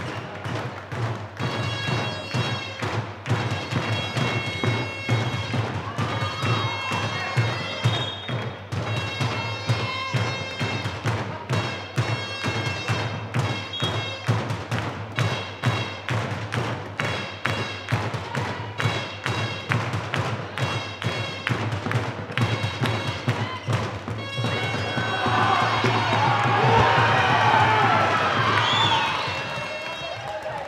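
Handball game in a sports hall: the ball thudding on the floor as players dribble and pass, amid footsteps and a steady low hum. Near the end the sound grows louder with a stretch of shouting voices.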